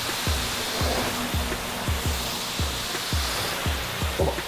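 Self-service car wash high-pressure wand spraying a steady jet of water onto a car's freshly coated bonnet: a continuous hiss of spray striking the paint.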